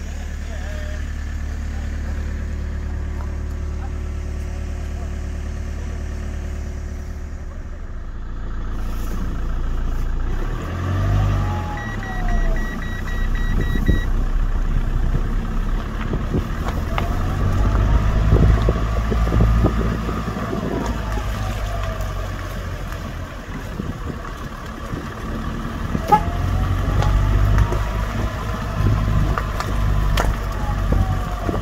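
Heavy vehicle engine idling steadily, then revving up and down repeatedly with slow rising-and-falling whines, as a machine working under load. A short run of rapid beeps sounds about twelve seconds in.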